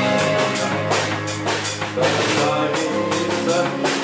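Live rock band playing a song, with drum kit and guitars and regular drum and cymbal hits. A voice comes in briefly near the end.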